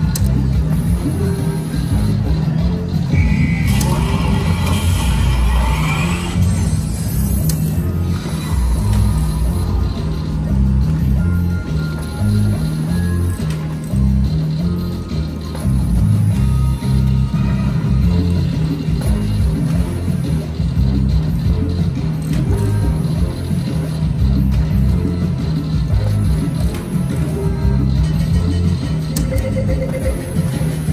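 Loud background music with a thumping beat fills the casino floor, over the electronic spin sounds and chimes of slot machines, with a short run of tones about four seconds in and a rising electronic sweep a few seconds later.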